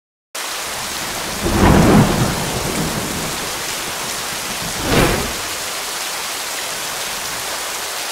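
Thunderstorm: steady heavy rain that starts suddenly, with a loud roll of thunder about a second and a half in and a second, shorter one about five seconds in.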